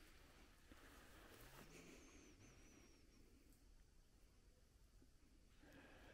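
Near silence: faint outdoor room tone, with a very faint, thin, high wavering whistle for about a second, starting around two seconds in.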